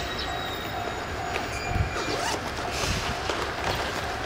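Diesel locomotive hauling a rake of passenger coaches as it rolls slowly into the station: a steady engine rumble with wheel and rail noise.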